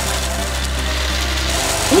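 Three countertop blenders (Cuisinart, Ninja and NutriBullet) running at full speed together, their motors whirring steadily as the blades chop up plastic glow sticks.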